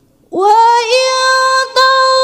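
A reciter's voice chanting Quranic tilawah. After a short pause it comes in suddenly and loud on a long, high held note with small melodic ornaments, breaking off briefly near the end.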